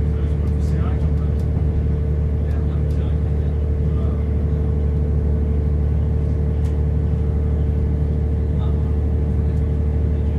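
Inside a Class 170 Turbostar diesel multiple unit running at speed: a steady low drone and hum from its underfloor diesel engine and transmission and the wheels on the rails, with a constant mid-pitched tone above it and a few faint ticks.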